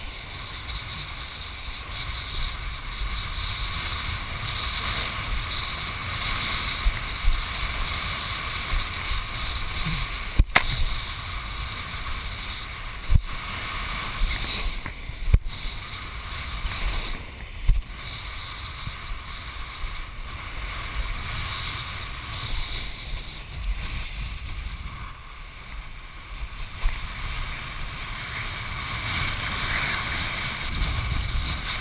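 Wind buffeting a helmet- or head-mounted GoPro in its housing and water rushing past a kiteboard planing over choppy sea, a steady rushing noise with a deep rumble. A few sharp knocks stand out in the middle stretch as the board hits the chop.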